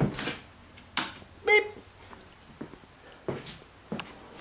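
A sharp click about a second in as the terrarium's overhead lamp is switched off, followed near the end by a second, softer knock.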